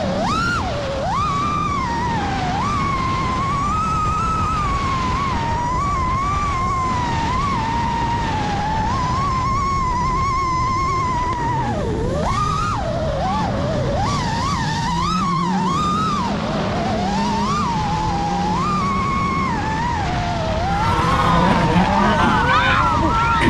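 Racing-drone motors whining, their pitch rising and falling as the throttle changes while the drone chases a rally car. A steady low rumble runs underneath.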